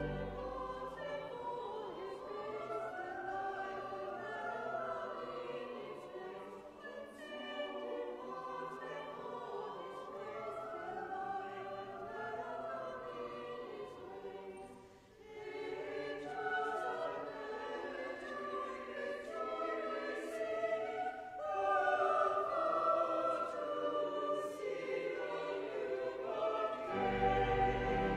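Church choir singing a carol in parts, mostly unaccompanied, with a short break about halfway through. Pipe organ bass comes back in near the end.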